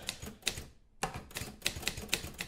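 A rapid run of light key clicks, like typing, breaking off briefly just before the middle.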